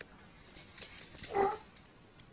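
A kitten gives one short, high mew about one and a half seconds in, after a few faint clicks.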